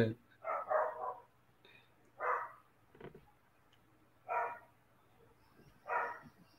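A person laughing, then a few short, separate vocal sounds about two seconds apart, with quiet between them.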